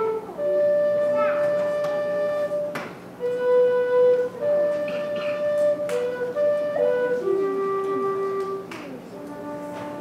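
Low whistle, the big brother of the penny whistle, playing a slow tune of long held notes, each lasting a second or two.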